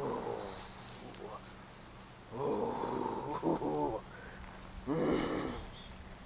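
Heavy, slow breathing of a man sitting in an ice bath, bracing against the cold: three long, loud breaths about two seconds apart. The middle one carries a short voiced groan.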